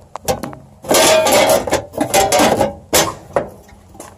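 Sheet-steel meter socket cover being fitted and latched into place: a few light clicks, then bouts of metal clanking and rattling, with a sharp knock near the end.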